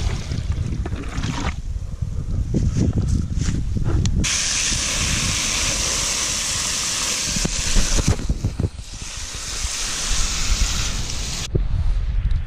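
Garden hose spray nozzle hissing as it sprays water over a bleached pig jawbone, starting about four seconds in and stopping shortly before the end, with a brief drop near the middle. Before the spray, a low rumbling noise.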